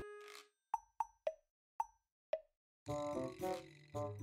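Five short plop sound effects, each a quick blip dropping in pitch, spread over about two seconds, followed near the end by a short musical jingle.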